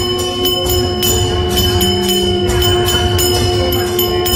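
Harathi music: a steady held drone with rhythmic ringing bell strikes, about four a second.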